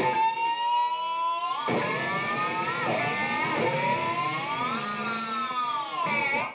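Distorted electric guitar, a Charvel USA San Dimas with a Floyd Rose tremolo, playing screaming pinch harmonics shaped with the whammy bar. A high sustained note glides slowly upward, a second harmonic is picked about two seconds in and dips and wobbles in pitch, and near the end the note rises and falls in a slow arch.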